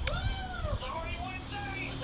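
A cat meowing: one long meow that rises and falls in pitch in the first second, then a few shorter cries.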